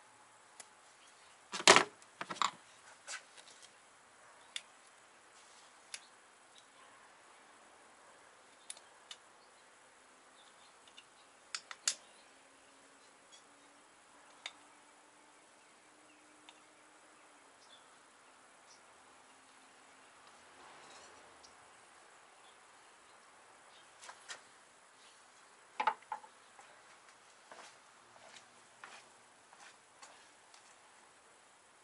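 Scattered sharp clicks and clanks of hand tools and parts being handled and set down in a car's engine bay. The loudest knock comes about two seconds in, with smaller clusters near the middle and near the end.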